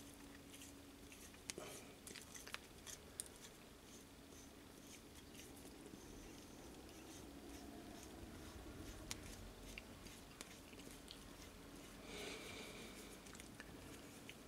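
Faint scattered clicks and light crunching from a hand-turned tap wrench and spring-loaded tap and chamfer tool, its chamfer cutter shaving the burr off the edge of a tapped thread. Otherwise near silence.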